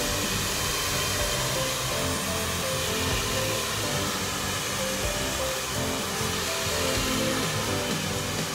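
Handheld hair dryer blowing steadily as long hair is blow-dried, with background music playing over it.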